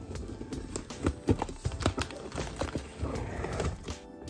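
Hands handling a taped cardboard box: a run of irregular taps, knocks and scrapes on the cardboard, with a longer rustle about three seconds in.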